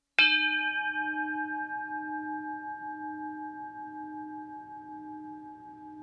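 A bell struck once just after the start, its ring fading slowly over several seconds with a gentle wavering pulse in its low tone.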